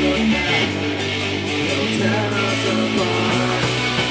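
Live rock band playing: electric guitars over a drum kit, with cymbal strokes keeping a steady beat.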